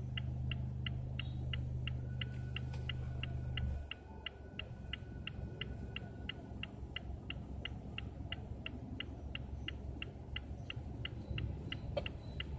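Even, rhythmic ticking of a car's indicator relay (turn signal or hazard lights), about three ticks a second, over a low steady hum that stops about four seconds in.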